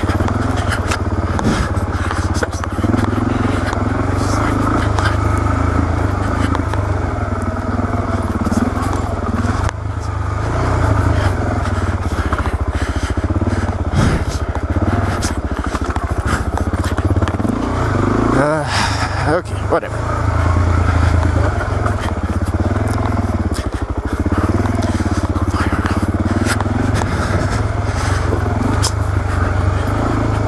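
Suzuki DR-Z400S single-cylinder four-stroke engine running steadily while the bike is ridden over rocky single-track, with scattered clicks and knocks. The revs rise and fall briefly about two-thirds of the way through.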